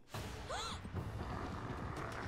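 Cartoon sound effects of mongoose lizards running across water: a steady splashing rush, with one short squeal that rises and falls about half a second in.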